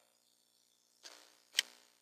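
A single sharp computer mouse click about one and a half seconds in, just after a softer handling sound.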